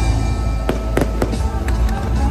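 Fireworks going off in a quick run of about six sharp bangs, starting under a second in, over loud show music with heavy bass.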